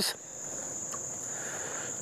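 Insects in the surrounding vegetation trilling: one steady, high-pitched, unbroken tone.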